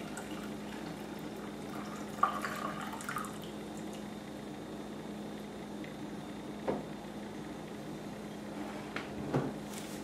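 Coffee pouring and dripping from a glass French press into a mug, faint over a steady hum. Then a light knock, and a couple more near the end as the press and mug are handled on the counter.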